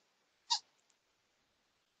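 Near silence, broken once about half a second in by a single brief sound.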